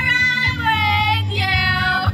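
Young women singing karaoke into a microphone through a portable PA speaker, holding long notes over a backing track.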